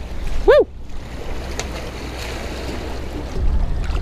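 Small waves washing and sloshing against the jetty's boulders, with wind rumbling on the microphone that grows stronger near the end.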